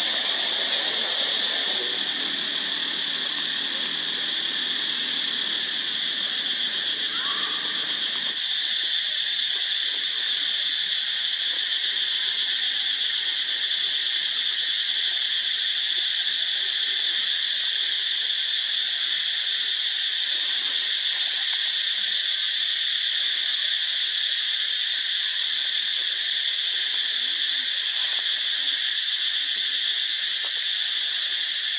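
A steady, high-pitched insect chorus drones without a break, holding one even pitch throughout.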